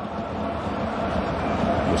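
Steady ambient noise of a football stadium during play: an even low rumble and hiss with no distinct events standing out.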